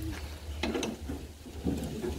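Socket wrench ratcheting on the bolts of a bare engine block: a few short spells of metallic clicking, over a steady low hum.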